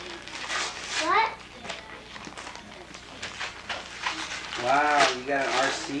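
Voices with a child's high-pitched excited calls: a quick rising squeal about a second in and a longer, louder call near the end.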